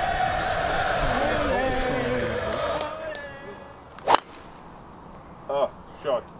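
A golf driver striking a teed-up ball on a tee shot: one sharp crack about four seconds in, the loudest sound here.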